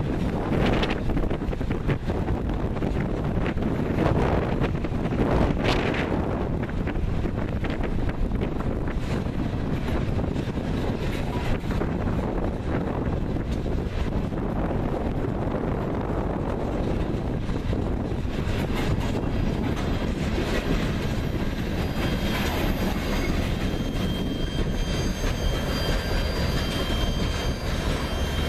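Loaded coal hopper cars of a long freight train rolling steadily past, wheels clattering on the rails, with wind buffeting the microphone. Faint high-pitched wheel squeal comes in during the last third.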